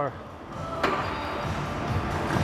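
A single sharp metal clank about a second in, as a plate-loaded leg press sled is lowered onto its rests, over background music with a low beat.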